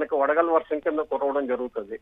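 Only speech: a man talking in Telugu over a telephone line, with the thin sound of a phone call.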